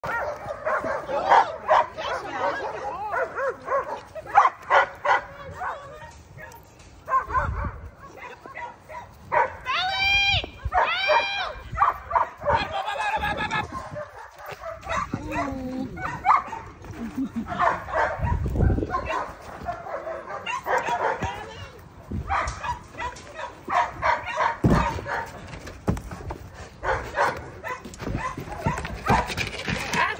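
Nine-month-old German Shepherd barking again and again during protection bite work, mixed with men's voices. Two high, sharp calls stand out about ten and eleven seconds in.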